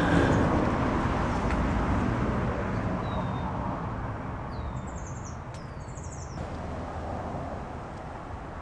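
Outdoor background noise that slowly fades, with a few short, high bird chirps about halfway through.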